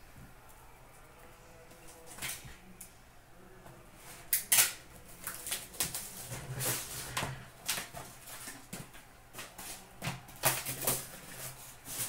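A cardboard hockey card box and its wrapped card packs being handled and opened: a run of rustles, crinkles and sharp taps that starts about four seconds in, after a quiet start.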